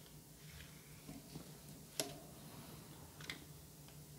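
Faint handling sounds of a drawstring pouch and plastic packaging: soft rustling and a few small clicks, with one sharper click about two seconds in.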